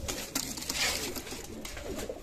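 Domestic pigeons cooing, with rustling and a couple of light clicks as a pigeon is held in the hand.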